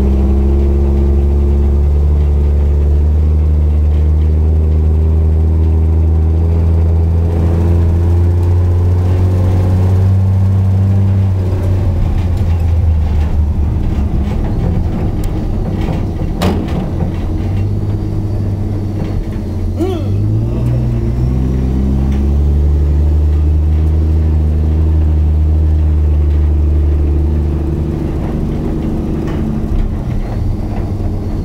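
Humber Pig armoured truck's Rolls-Royce B60 straight-six petrol engine, loud with the engine cover off, pulling steadily as it drives across grass. The revs waver through the middle, climb in a few steps a little over two-thirds of the way through, hold steady again, then drop near the end.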